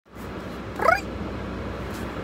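A short rising vocal 'ooh' from one of the people in the car, about a second in, over the steady low hum of the car's cabin.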